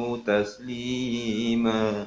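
A man's voice chanting Arabic Quranic recitation in long, drawn-out melodic notes, the close of the verse calling believers to send blessings and peace on the Prophet. A short phrase is followed by one long held note that cuts off abruptly at the end.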